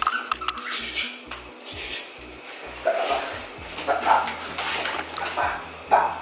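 Miniature schnauzer puppy playing with a toy, with scuffles, scattered clicks and a few short sounds from the puppy.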